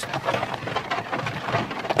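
A pony and trap on the move: a steady, dense crackling rattle of the trap's wheels and the pony's going on the road.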